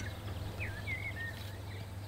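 Birds calling outdoors: several short whistled notes, rising and falling, over a low steady hum.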